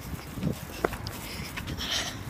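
Running footsteps with the phone's microphone jostling and rubbing, as irregular low thumps over a noise haze, with one brief squeak just under a second in.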